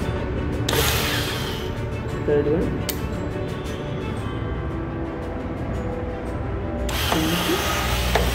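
Small 12 V DC motors driving a belt conveyor on a PLC filling rig, running with a steady hum and whine and a rapid light ticking. A burst of hiss comes about a second in and again near the end.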